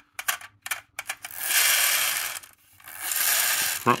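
Friction motor of a 1970s plastic toy bus whirring in two bursts of about a second each as its powered front wheels are spun, after a few light handling clicks. The owner thinks the friction motor is pretty much shot.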